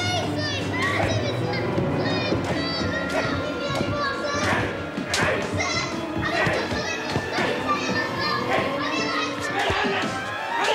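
A boy crying out and shouting in terror as he is caned, with several sharp smacks of the cane, over background music.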